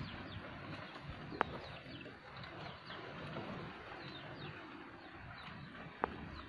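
Goats chewing and tearing at fresh leaves close to the microphone, a steady crunchy rustling with one sharp snap about a second and a half in.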